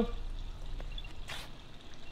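Apple AirTag playing its locating sound: faint high electronic chirps begin about a second in, over low steady background noise, with a brief hiss just after.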